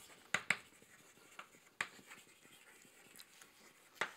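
Chalk writing on a blackboard: a few sharp taps of the chalk, the loudest in the first two seconds, with faint scratching between.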